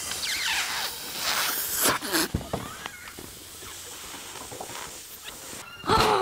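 Two people blowing up inflatable Socker Boppers boxing pillows by mouth: breathy puffs of air into the valves, loudest in the first two seconds and fainter after.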